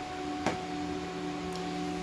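Server rack's cooling fans running in a small closet, a steady hum of several fixed tones, with a single click about half a second in.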